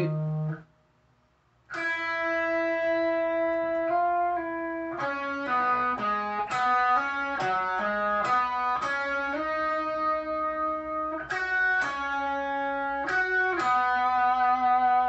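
Schecter Diamond Series electric guitar playing a slow rock lead phrase: after about a second of silence just after the start, a string of sustained single notes, each held from half a second to about two seconds before moving to the next.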